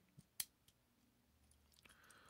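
Near silence broken by two faint, short plastic clicks within the first half second, from the joints of a small Transformers Legends Optimus Prime figure being moved as it is transformed.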